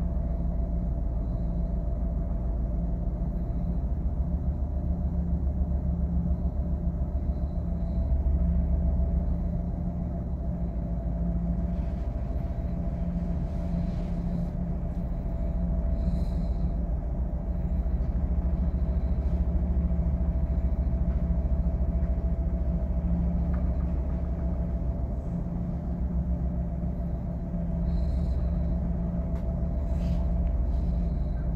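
Steady low rumble and hum of a standing train, with a constant mid-pitched tone held over it and a few faint ticks.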